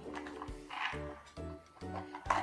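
Music: a simple tune of short held chords changing about every half second.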